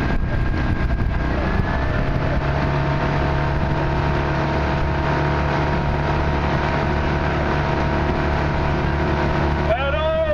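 Outboard motor of a launch running at a steady cruising pace alongside racing rowing eights, a constant low drone mixed with water and wind noise.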